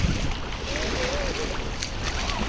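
Small waves washing in over the sand in shallow surf, with a steady wash of water and a low wind rumble on the microphone.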